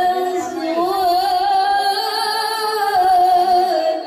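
A woman singing long, held notes with a slight waver in pitch, over music.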